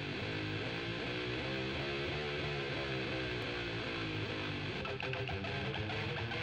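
Heavy metal intro: electric guitar playing a repeating riff over bass guitar. Sharper percussive hits join about five seconds in.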